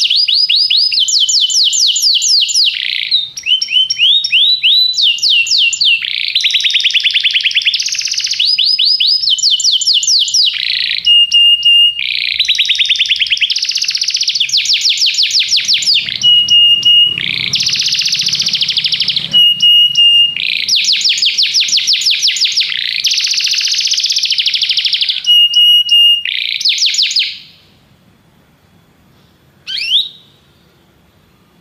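Domestic canary singing a long, unbroken song of fast trills and rolls, broken now and then by short level whistled notes. The song stops about two seconds before the end, followed by one brief chirp.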